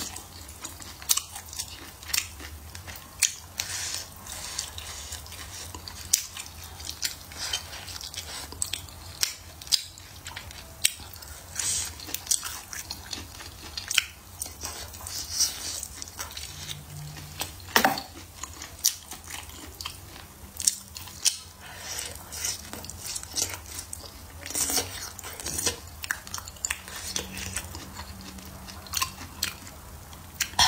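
Close-miked chewing and biting of braised eggplant and chicken, with many short, sharp mouth clicks and smacks at irregular intervals; the loudest click comes a little past halfway.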